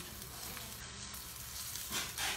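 Onions and vegetables frying in a wok, sizzling steadily as they are stirred with a wooden spatula.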